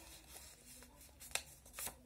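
Faint rustling of a folded paper circle being handled, with one short sharp click a little past halfway and a softer one near the end.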